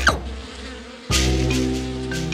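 Cartoon sound effect of bees buzzing around a beehive worn as a hat: a steady drone that comes in loudly about a second in, after a short pained 'ow'.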